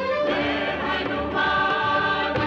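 Title music of a devotional Hindi serial: a choir singing long held notes over orchestral accompaniment.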